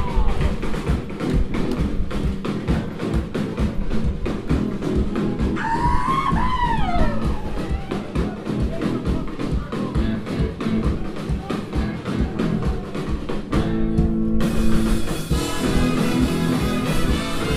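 Ska-punk band playing live: a drum kit keeps a fast, steady beat under guitar and bass, with a horn section of saxophone, trumpet and trombone. The sound grows brighter and fuller near the end.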